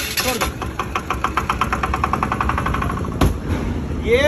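Diesel engine of a 7.5 kVA Bajaj-M soundproof generator set running just after being started, an even rapid knocking of about a dozen beats a second. A single sharp knock about three seconds in.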